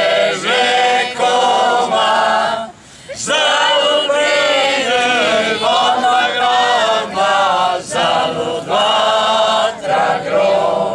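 A mixed group of men and women singing together a cappella in sustained phrases, with a short pause for breath about three seconds in.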